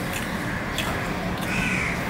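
A crow cawing once, about one and a half seconds in, over a few short wet clicks from a hand mixing water-soaked rice on a steel plate.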